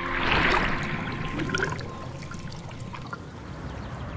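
Water splashing with a rush of bubbles, loudest in the first second, then fading to a softer trickling wash with scattered small ticks.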